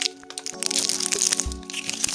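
Plastic Moj Moj blind capsule and its wrapper crackling and clicking as they are opened by hand, a quick run of sharp cracks over background music.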